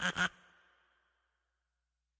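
The last few quick, pulsed notes of a short outro jingle, ending about a third of a second in with a brief fading tail, then dead silence.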